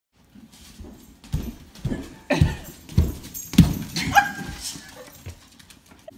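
Rubber space hopper bouncing on a hardwood floor: a run of thuds roughly every half second, loudest in the middle. A dog makes a short pitched cry about four seconds in.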